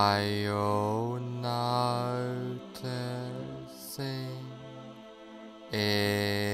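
Meditation background music: a low, wordless chant-like drone held on one pitch in several phrases of a second or two with short breaks, its vowel sound shifting within each phrase.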